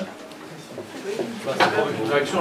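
Faint, distant voice of someone in a classroom audience speaking off-microphone, with a louder word about one and a half seconds in.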